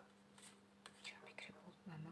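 Near silence with a faint steady hum and a few soft, faint clicks from a deck of tarot cards being handled.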